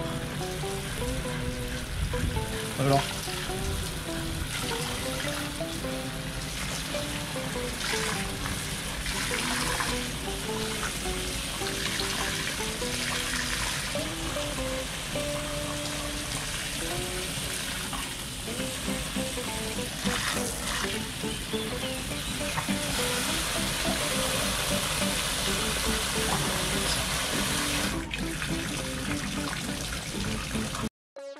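A stream of water from a garden hose spray nozzle runs steadily, splashing into a small pond, under background music with a light stepping melody.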